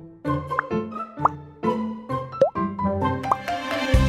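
Cheerful children's background music, with several short cartoon plop sound effects that sweep upward in pitch through it.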